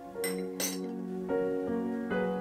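Piano background music, with two sharp clinks of a spoon against a glass mixing bowl about a quarter and two-thirds of a second in.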